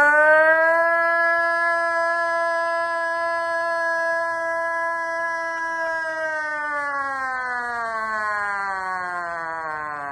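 A man's voice imitating an air-raid siren through cupped hands: one long, loud held tone that keeps a steady pitch, then slowly slides down from about six seconds in, like a civil-defence siren winding down.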